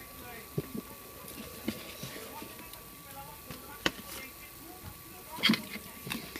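Quiet handling noise of jumper wires being fitted to an Arduino Uno's header pins: a few faint clicks and taps, one sharper click about four seconds in and a short louder rustle near the end, over a faint steady high tone.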